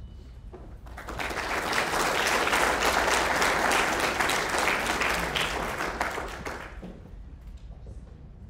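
Audience applauding. It starts about a second in, swells, and fades away near the end.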